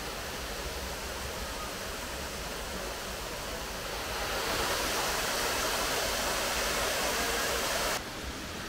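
Steady rushing of the 30-metre Hotnitsa waterfall pouring into its pool, swelling louder about halfway through.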